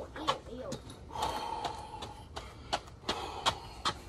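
A man breathing hard between pull-ups and push-ups in a weighted vest, with short sharp clicks throughout and voices in the background.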